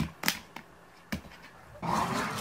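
Small dog pawing and scrabbling at a plastic bin of litter, with a few sharp scratching clicks, then a louder burst of rushing noise near the end.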